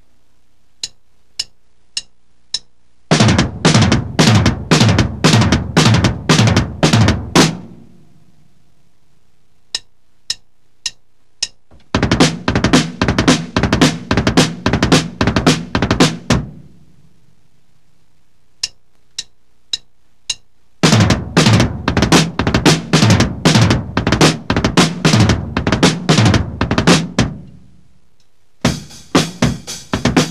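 Drum kit with two bass drums playing the four-stroke ruff: sixteenth-note triplets on the feet with the fourth stroke on the hands. It is played in three short passes, each counted in with four quick clicks and ending in ringing. Near the end a brighter new pattern begins.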